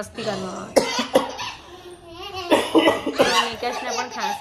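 A person coughing, several sharp coughs broken up by laughter and talk.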